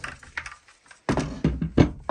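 Milwaukee Fuel framing nailer knocking and thudding against a plywood workbench as it is handled and set down. There are several knocks in the second second, the loudest near the end.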